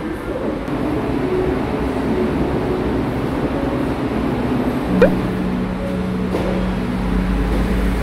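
Faint background music over the steady room noise of a shop, with a brief sharp sound about five seconds in and then a steady low hum.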